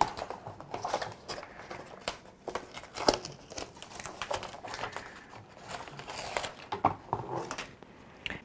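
A paper template and blue painter's tape being peeled off a hard plastic trim panel and crumpled in the hand: crinkling paper and irregular crackles and ticks as the tape pulls free.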